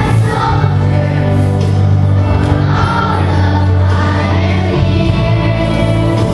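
A children's choir singing a patriotic song over an instrumental accompaniment with deep, held bass notes.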